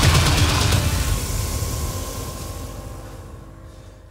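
Dramatic score music with a deep rumble and rapid pulsing, dying away over about three seconds to a few faint held notes.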